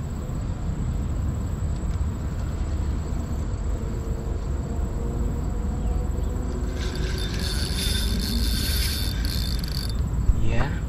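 Wind buffeting the microphone with a steady low rumble over the water. From about seven seconds in, a high insect buzz rises for two or three seconds, then fades.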